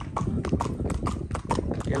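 Horse hooves clip-clopping on a road, a quick uneven run of knocks several times a second from more than one horse.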